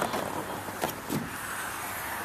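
A minivan's rear liftgate being unlatched and raised: a few short clicks and knocks over steady background noise.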